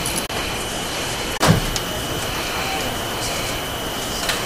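Steady hissing background noise of a courtroom microphone feed with a faint high steady tone, broken by a single sharp click or thump about a second and a half in.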